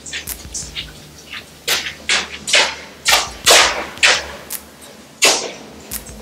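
Footsteps splashing through shallow standing water on a concrete storm-drain floor: an uneven series of short swishing splashes, loudest a few seconds in.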